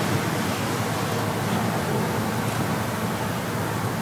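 Steady room tone: an even hiss with a low hum underneath.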